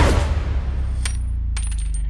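A heavy hit at the start rings on as a steady deep rumble. Over it come small metallic clinks, one about a second in and a few more near the end, like flattened bullets dropping onto a hard floor after gunfire.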